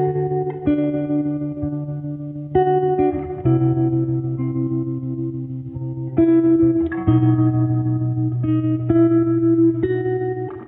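Instrumental background music led by guitar, with melody notes changing every second or so over long held bass notes.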